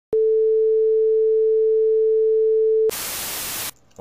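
Television test-card tone: a single steady beep held for nearly three seconds, then cut off by a short burst of TV static hiss that stops about three-quarters of a second later.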